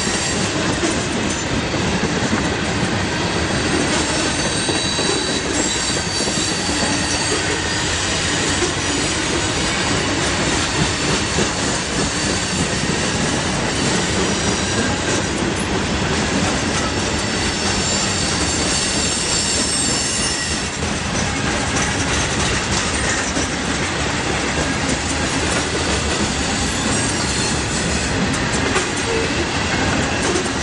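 Freight train of CSX coal hopper cars rolling past, a steady rumble and clatter of steel wheels on rail, with thin high wheel squeal coming and going.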